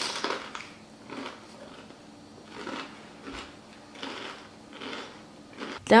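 Chewing with soft, irregular crunches: a bite of jalapeño stuffed with cream cheese and crunchy Takis being eaten.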